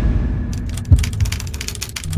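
Logo sound effect: a deep rumble with a low boom about a second in, overlaid with rapid crackling clicks.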